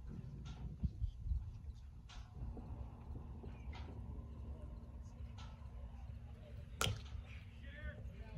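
Bat striking a pitched baseball: one sharp crack about seven seconds in, over steady wind rumble on the microphone.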